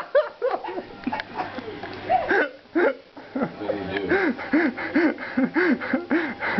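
A man laughing in a string of short, pitched bursts, scattered in the first half and then coming about twice a second.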